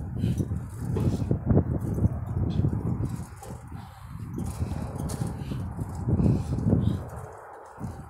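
Wind buffeting a phone microphone as a low, uneven rumble, with footsteps on concrete pavement while walking.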